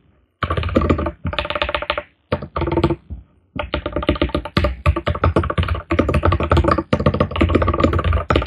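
Rapid typing on a computer keyboard, fast runs of keystrokes in bursts broken by brief pauses.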